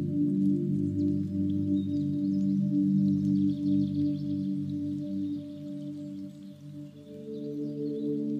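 Ambient holding music of sustained low drone tones, with a faint high chiming shimmer above; it dips briefly and a new tone comes in near the end.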